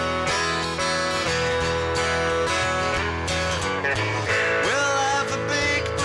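Live band music led by a strummed acoustic guitar, with the rest of the band playing along in a passage between sung lines.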